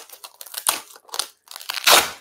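Irregular crackling and crinkling rustle, a run of small sharp crackles with a louder rustle near the end, as of something being handled close to the microphone.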